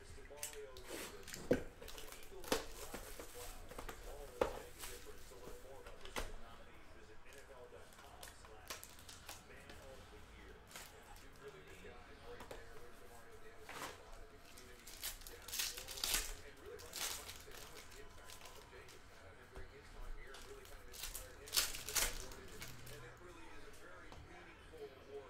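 A cardboard trading-card hobby box being handled and its foil card packs opened: scattered light taps and knocks in the first few seconds, then crinkling and tearing of wrappers, loudest in bursts about two-thirds of the way through and near the end.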